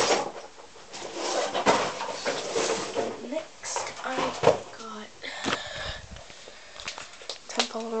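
A person's voice talking indistinctly in a small room, with a run of short clicks and rustles in the first few seconds.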